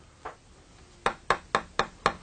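Keystrokes on a computer keyboard: a run of short sharp clicks, about four a second, starting about halfway in, after one faint tick.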